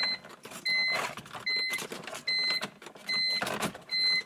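A steady electronic beep repeats about five times, a little more often than once a second, over irregular creaks and scrapes of plastic dashboard trim being pried and pulled loose.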